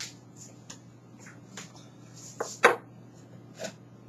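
Faint clicks and light taps of things being handled on a kitchen counter, with two sharper knocks about two and a half seconds in, over a steady low hum.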